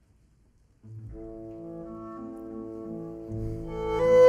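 Orchestra playing classical music. After a brief hush it comes in about a second in with sustained chords and builds near the end, where the solo violin enters.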